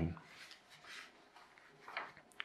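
Faint rustling and sliding of a sheet of paper being handled and shifted on a felt-covered tabletop as it is lined up for folding.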